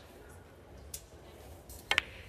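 Snooker cue striking the cue ball, a single sharp click near the end, after a fainter click about a second in.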